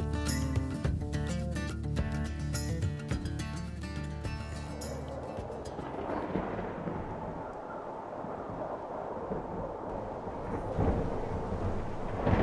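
Acoustic guitar background music that fades out about five seconds in, giving way to a steady low rumble of an approaching thunderstorm: wind and distant thunder.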